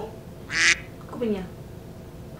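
A woman's voice in short fragments: a brief hiss-like syllable about half a second in, then a short falling vocal sound.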